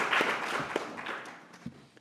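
Audience applauding, the clapping thinning out and fading away over about two seconds.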